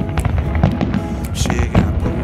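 Aerial fireworks bursting in a display, several sharp bangs and crackles a fraction of a second to a second apart, over a loud pop song with a singer.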